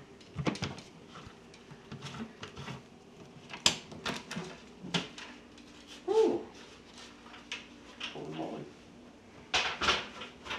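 Clicks and knocks of a large RC boat's plastic canopy hatch being worked loose and lifted off by hand.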